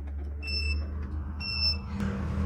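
Home inverter beeping as it is switched on: two short, high-pitched electronic beeps about a second apart, over a steady low hum.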